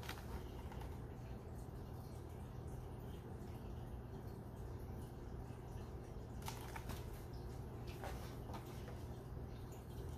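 Quiet room tone with a steady low hum, and faint handling of a hardcover picture book as it is held up open and shown, with a few soft taps about six and a half and eight seconds in.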